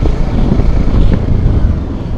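Steady rush of wind and road noise from a motorcycle coasting downhill with its engine switched off, heaviest at the low end.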